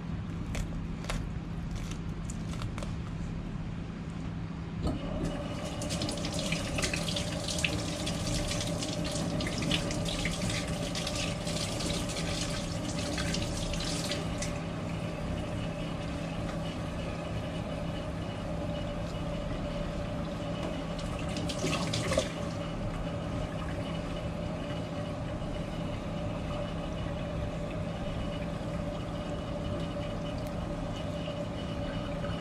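Kitchen tap running with water splashing into a sink for about ten seconds, then a second short burst of water later on, over a steady machine hum.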